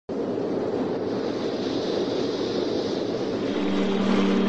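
Steady rushing noise, like wind or surf, that starts abruptly and holds level: the ambient opening of a poetry backing track. A low held note comes in near the end.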